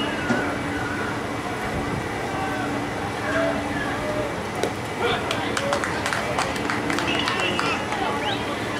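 Players and spectators at a baseball game chattering and calling out. A little past halfway a pitch smacks into the catcher's mitt, followed by a run of sharp claps.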